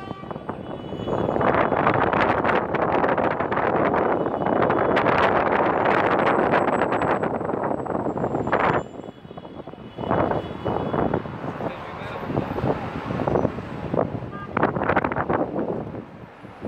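Outdoor city noise heard from a rooftop: a loud, steady rush of wind and traffic that drops away suddenly about nine seconds in, followed by people's voices talking indistinctly in the background.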